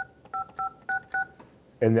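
Avaya J139 desk phone keypad being pressed, each key giving a short dual-tone dialing beep through the phone's speaker: five quick tones in just over a second, about three a second, each starting with a faint key click.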